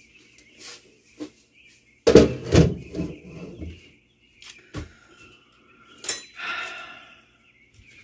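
Dishes being washed by hand in a kitchen sink: a loud burst of clanking about two seconds in, a single knock near five seconds, and another shorter rattle of dishes around six seconds.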